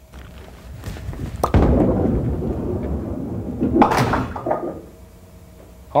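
Bowling ball set down onto the wooden lane with a thud about a second and a half in, rolling down the lane with a low rumble, then a sharp clatter just before four seconds in as it knocks off the 10 pin alone.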